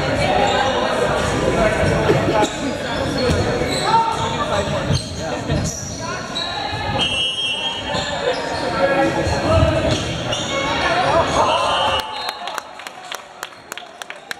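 Volleyball rally in a gymnasium: ball thuds mixed with players and spectators calling out, echoing in the large hall. The noise drops off sharply about two seconds before the end, leaving a few sharp clicks.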